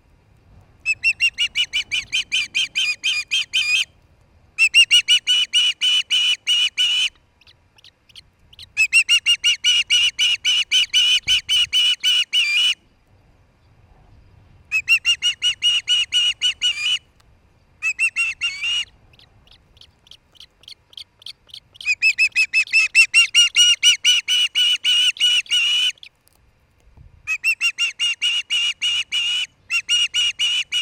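Osprey calling close by: rapid series of high, whistled chirps repeated in loud bouts of a few seconds each, about seven bouts with short pauses and fainter notes between.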